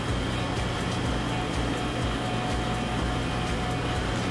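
Steady mechanical hum of a running air conditioner/dehumidifier and refrigerator, with a faint steady high tone over it.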